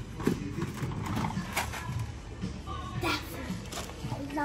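Cardboard boxes of ice lollies knocking and scraping against each other and the wire baskets of a supermarket chest freezer as they are rummaged through, with several sharp knocks.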